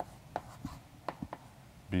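Chalk writing on a blackboard: about six short, sharp taps and strokes as symbols are drawn.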